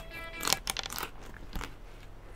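Crunchy bites and chewing of a bundle of chocolate-coated Pocky sticks: a few sharp crunches, the loudest about half a second in.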